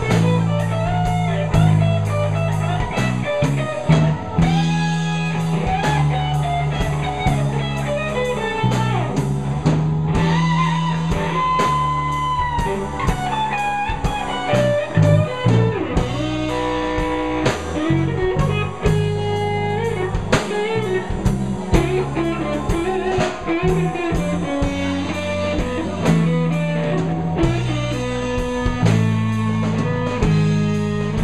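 Live blues-rock band playing an instrumental: electric guitar lead lines with long held and bent notes over electric bass and a drum kit, with a second electric guitar.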